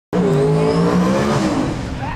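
Drag race car engine running at high revs at the starting line, one loud steady note that drops in pitch and fades about a second and a half in.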